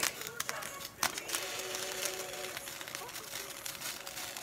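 Water spilled on a hot stovetop crackling and sizzling around a skillet of rice and vegetables at the boil. The pan lid clicks as it is lifted near the start, with another sharp click about a second in.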